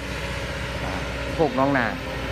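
Kobelco crawler excavator's diesel engine running steadily, an even low drone.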